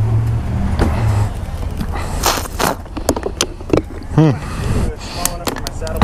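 An engine idles with a steady low hum and cuts off about a second in. After that come scattered clicks and a short rustling burst of handling noise, with faint voices.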